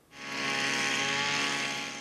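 Motorized backpack mist blower running steadily while spraying pesticide: a small engine's even hum under a strong rushing hiss of the air blast. It fades in at the start and eases slightly near the end.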